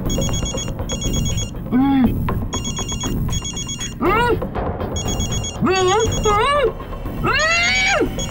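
A mobile phone ringing unanswered in repeated double rings. A woman's voice moans over it in several rising-and-falling cries, mostly in the second half.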